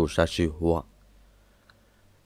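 A man's voice narrating a folk tale in Hmong, breaking off less than a second in, followed by a quiet pause with a single faint click.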